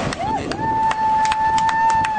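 A horn gives a short blip, then one long steady note from about half a second in: the finishing signal as a Star boat crosses the line.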